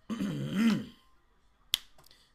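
A man clearing his throat, then a single sharp click near the end.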